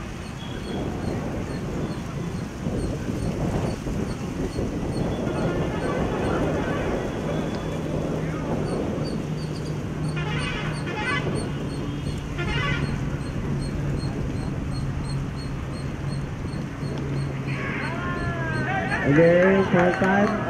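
Indistinct voices of players and onlookers over outdoor background noise, with a steady low hum through the middle. A man's voice comes in clearly near the end.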